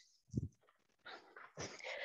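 A short, soft low thump about a third of a second in, then faint shuffling and a brief breathy sound, as a person lowers herself to sit on a yoga mat.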